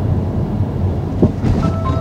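Peugeot 5008 SUV going over a speed bump, heard from inside the cabin: steady road rumble with one thud from the tyres and suspension a little over a second in.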